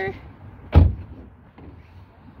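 A car door being shut once, a single short slam a little under a second in.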